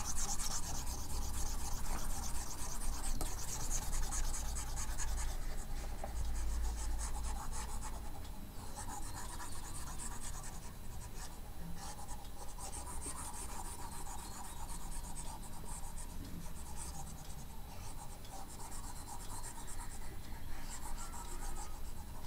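Stylus rubbing and scratching back and forth on a pen tablet as handwritten working is erased, in rapid scratchy stretches with short pauses.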